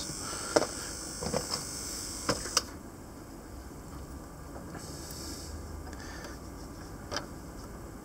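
Light clicks and taps of small hand tools being handled at a workbench over a steady low hum; a high hiss stops sharply with a click a little over two seconds in.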